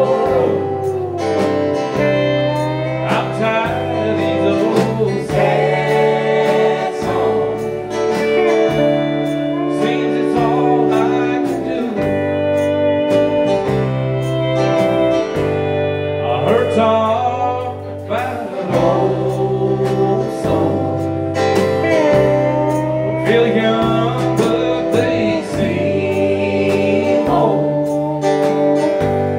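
Country band playing live: pedal steel guitar with gliding notes over acoustic guitar, bass and drums.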